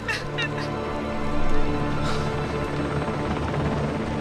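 Film score with long held notes, and a few short high squeaks in the first half second.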